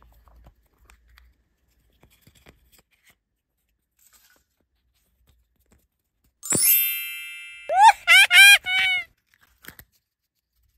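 Faint clicks of small plastic and foil handling, then about six and a half seconds in a bright chime rings out and fades, followed by four short high notes that each rise and fall, like a cartoon voice: an added sound effect.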